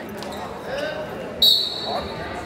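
Referee's whistle blown once, a short, sharp, high-pitched blast about one and a half seconds in, signalling the wrestlers to start from referee's position.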